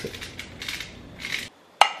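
Handheld spice mill being twisted, grinding in several short rasping bursts. Near the end comes a single sharp knock.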